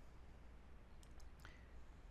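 Near silence: room tone with a low hum, and a few faint clicks about a second in.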